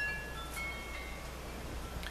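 Chimes ringing: several clear, high tones start one after another in the first second and ring on, over a steady low hum.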